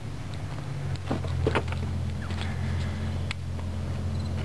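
Steady low drone of an engine running, with a few faint clicks over it.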